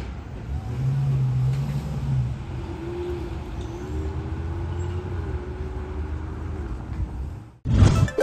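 Street traffic: car engine and tyre noise as an SUV pulls away through an intersection, with a low hum for about a second and a half and then a higher, wavering hum through the middle. Shortly before the end the street sound cuts off abruptly and a short music sting starts.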